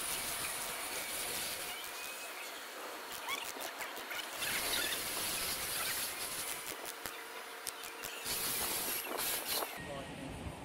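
Faint workshop background: a low steady hiss with distant voices and a scattering of light clicks.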